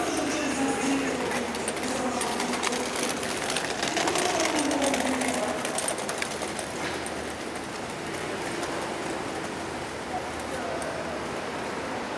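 City street noise outside a church: people's voices and passing traffic, with pitches that slide downward as things go by, over a wash of short clicks and knocks.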